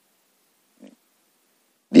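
A pause in a man's speech: quiet room, broken about a second in by one short, faint, low vocal sound, and his voice comes back right at the end.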